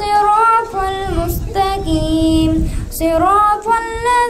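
A boy's voice chanting Quranic recitation in the melodic tajweed style into a microphone, drawing out long held notes with ornamented rises and falls of pitch between short breaths.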